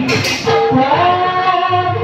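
Live music from a Bhaona stage performance: held melodic notes that step up in pitch about a second in, with a short crash-like hit near the start.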